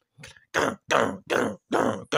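A person's voice shouting short "Gah!" cries in quick succession: one faint cry, then four loud ones, about two to three a second, each falling in pitch.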